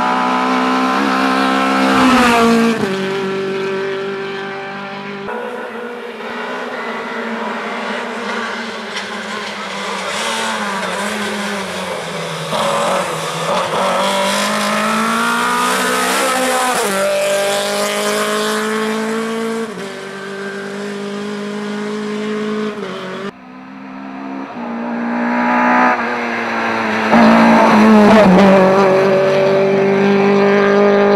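Lada 2101 rally car's four-cylinder engine revving hard under acceleration, its pitch climbing and dropping again with each gear change and lift for the corners. The sound jumps abruptly twice where the shots change.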